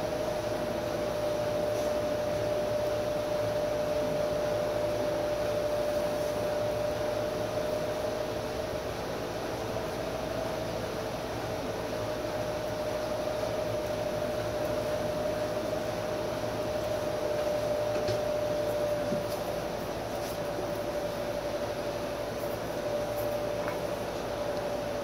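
Large pedestal fan running, a steady whirring hum with one constant tone. A few faint clicks come near the end.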